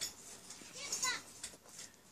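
Faint children's voices with a few small clicks.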